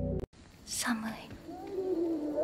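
Background music cuts off abruptly; after a brief silence comes a breathy whispered voice, with faint tones starting beneath it near the end.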